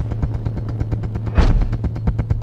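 Suspense drumroll: rapid, even drum strokes over a steady low droning note, the cue that holds back a result before it is announced.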